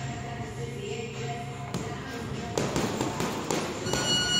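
Boxing gloves punching a hanging heavy bag: a few sharp thuds in the second half, coming faster toward the end.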